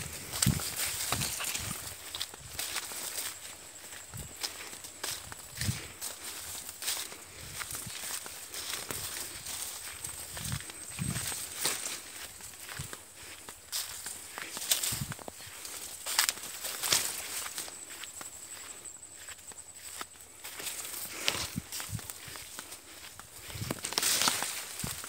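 Sugarcane leaves and dry cane trash rustling and crackling as someone pushes through the cane on foot, with irregular footfalls and leaves brushing close against the microphone.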